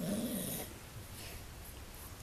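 A dog gives a short, rough play growl of about half a second, right at the start, while two dogs wrestle.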